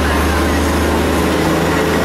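A narrow-gauge train running slowly, heard from aboard an open carriage: a steady low engine drone with running noise.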